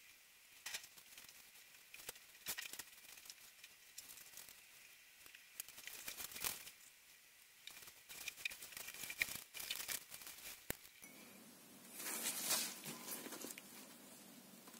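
Faint, irregular small clicks and crackles, then a louder rustle about twelve seconds in.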